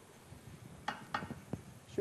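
A few light knocks of a wooden spoon against a non-stick cooking pot, four short taps about a second in, after corn has been stirred into rice and boiling water.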